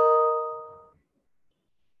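A two-tone electronic notification chime rings and fades away about a second in.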